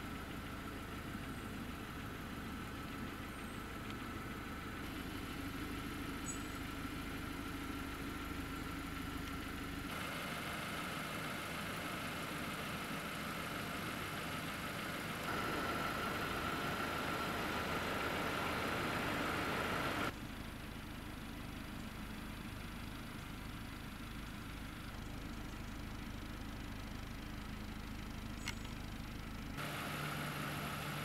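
Renault Austral's 1.3-litre four-cylinder petrol engine idling steadily. The sound shifts abruptly a few times and is loudest from about 15 to 20 seconds in.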